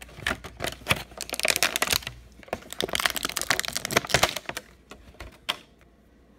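Clear plastic blister tray crackling and clicking as an action figure's axe and sword are pried out of it: a dense run of sharp crackles for about four seconds, then a couple of single clicks.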